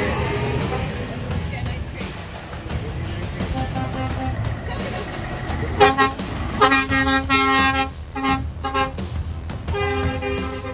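Scania lorry engines running as the trucks pull past, with truck horns blowing a run of short and longer blasts from about six seconds in.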